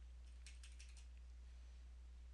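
Faint computer keyboard keystrokes, a quick run of about six clicks around half a second to a second in, over a low steady hum.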